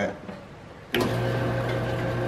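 Kitchen trash compactor switched on with a click about a second in, its electric motor then running with a steady hum as it starts a compression cycle.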